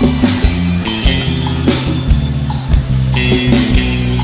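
Live brega band playing an instrumental passage: electric guitar over a steady bass line and a drum-kit beat.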